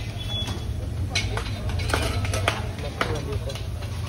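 A few sharp metallic clinks as steel lids and utensils knock against stainless-steel food containers. A steady low traffic hum and background voices run underneath.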